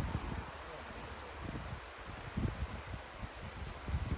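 Wind gusting on the microphone, with irregular low rumbles, over a steady rush of the river below the cliff.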